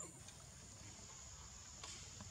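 Near-silent outdoor background with a faint, steady high-pitched insect drone and a faint click near the end.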